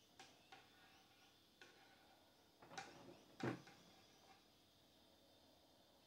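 Light clicks and knocks from hands working at a wooden radiogram cabinet, with a louder thump about halfway through, over near silence.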